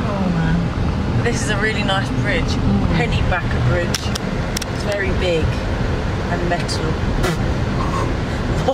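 Steady low road and engine rumble inside a moving car's cabin, with a woman's voice over it. A few light clicks come around the middle.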